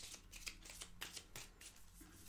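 A tarot-size oracle card deck being shuffled by hand: soft, quick riffling strokes of card against card, about three a second, faint.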